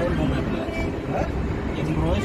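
Steady rumble of a moving road vehicle heard from inside, with people talking in the background.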